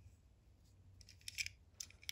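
Faint clicks and ticks of a small die-cast model car being handled and turned in the fingers: a quick cluster of clicks about halfway through and a couple more near the end.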